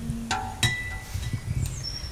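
Two light metallic strikes, each ringing briefly, the second about half a second after the first, then a short high bird chirp near the end, over faint background noise.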